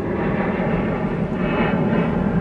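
Chevrolet Camaro ZL1's supercharged V8 idling steadily, heard from inside the cabin.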